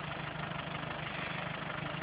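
Land Rover engine running steadily at idle.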